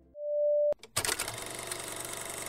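A single steady electronic beep, about half a second long, that cuts off with a click. About a second in, a steady rattling hiss starts and carries on.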